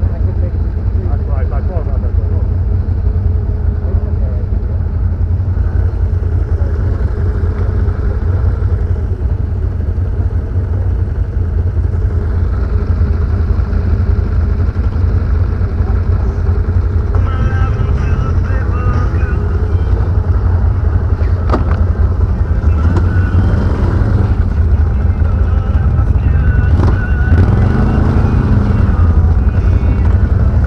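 ATV engine running during a ride, with a deep, steady rumble throughout.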